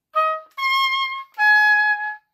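Oboe playing a syncopated figure of three notes: a short eighth note, then a held high C natural, then a slightly lower held note. Each note starts crisply, with the high C supported and popped out as an accent.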